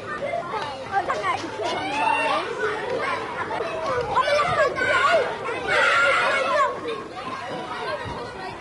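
Many high voices chattering and calling out over one another at once, like children at play, with no one voice standing out.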